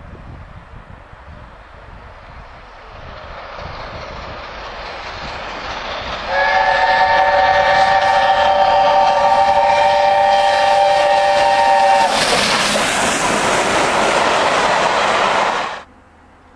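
LNER A4 streamlined steam locomotive approaching at speed with its train, growing steadily louder, then sounding its chime whistle, a chord of several notes held for about six seconds. The whistle stops and a loud rush of the locomotive and coaches passing close follows, cut off suddenly just before the end.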